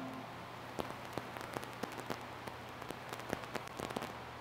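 The last held organ notes cut off at the very start, then faint, irregular clicks and ticks, about four or five a second, over a low steady hum.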